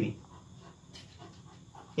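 Faint scratching of a pencil writing on paper, irregular and soft, with a faint tick about a second in.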